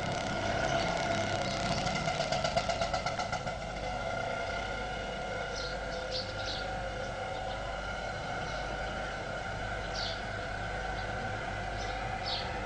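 Steady background hum with several whining tones. For the first three and a half seconds a fluttering, motor-like sound joins it and then fades out. A few faint, short high chirps come later.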